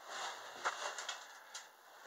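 Footsteps crunching through shallow snow over grass, a few uneven steps.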